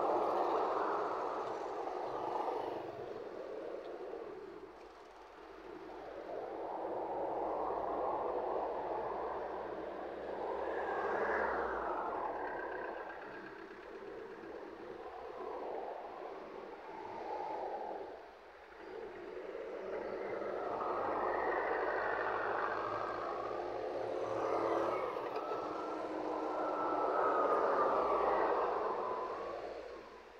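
Road traffic: vehicles passing close by one after another, each swelling in and fading out over a few seconds, with the longest and loudest pass near the end.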